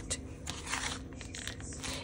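Faint rustling and a few light ticks of hands handling a paper and cardboard journal.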